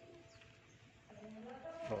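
A faint bird call over quiet background sound.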